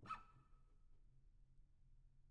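Near silence: faint room tone with a low hum. Right at the start there is a brief faint sound with a thin tone that fades out within the first second.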